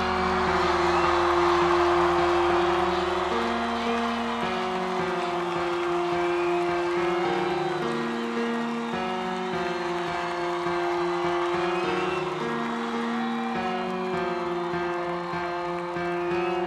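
Sustained synthesizer pad chords changing every three to four seconds, with a large concert crowd cheering and whistling underneath, the cheering loudest in the first few seconds.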